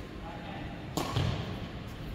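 Badminton racket striking a shuttlecock once, a sharp crack about halfway through, followed at once by a low thud.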